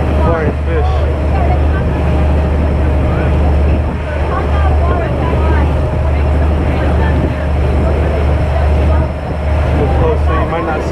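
Motorboat underway at speed: the engine running with a steady low hum while water rushes along the hull.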